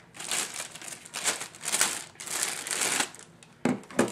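Clear plastic packaging bag crinkling in irregular bursts as it is pulled off a pair of headphones. It quietens after about three seconds, and a short light knock comes just before the end.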